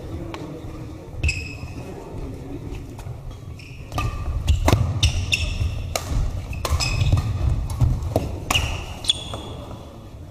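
Badminton rally: rackets striking the shuttlecock in a quick run of sharp hits, starting about four seconds in and lasting some five seconds, with short squeaks of court shoes on the sports-hall floor, in a reverberant hall.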